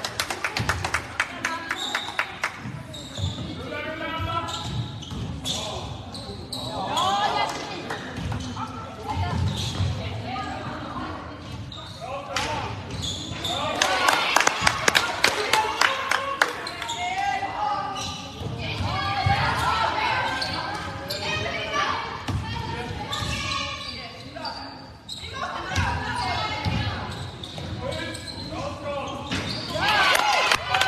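Handball bouncing and being dribbled on a wooden sports-hall floor, a series of sharp echoing knocks, among players' and spectators' calls.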